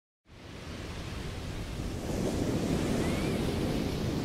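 Steady rushing of ocean surf, fading in from silence just after the start and slowly growing louder.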